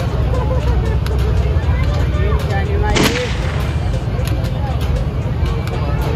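A break-barrel air rifle fired once, a single sharp crack about three seconds in, at a balloon-shooting stall. Voices and a steady low rumble fill the rest.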